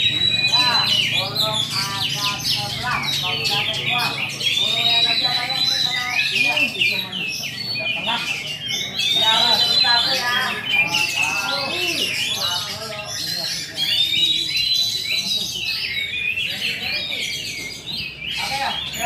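Many caged songbirds singing at once: a dense, overlapping chorus of chirps, trills and whistles, with a clear arched whistle that comes back every four or five seconds.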